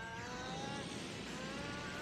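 Audio from a playing anime episode, faint under the room: several sustained tones gliding slowly in pitch, like an energy-charging sound effect or score.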